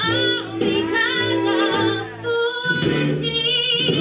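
A recorded show tune: a female soprano singing with a wavering vibrato over backing music, with a short break a little after two seconds in.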